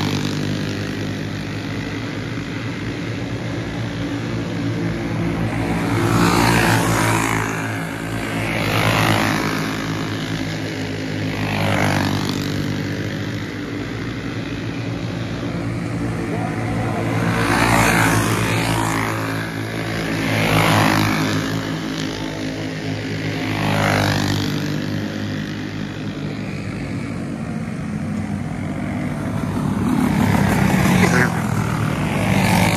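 Racing go-karts' small engines buzzing as they lap a dirt oval, the sound swelling louder six times as karts pass close by, roughly every three seconds in two groups.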